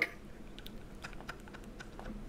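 Faint, irregularly spaced light clicks, about a dozen, over quiet room tone.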